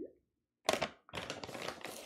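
A measuring spoon scooping flour out of a flour bag, with crackling rustles from the bag and scraping of the spoon, in two bouts that start after a short pause.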